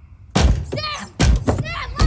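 Sudden loud bangs against a car, the first about a third of a second in and two more near the middle, with high wavering cries between them.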